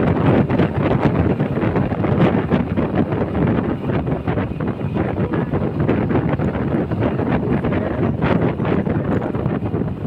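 Steady wind buffeting the microphone of a camera on a moving motorcycle, a dense rushing noise that covers most other sound.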